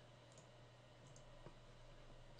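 Near silence: low steady room hum with a faint computer mouse click about one and a half seconds in.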